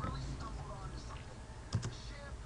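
Slow typing on a computer keyboard: a few separate keystrokes, the loudest a quick pair of clicks near the end.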